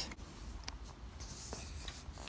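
Faint rustle of a picture book's paper page being turned, with a few small ticks, over a low steady background rumble.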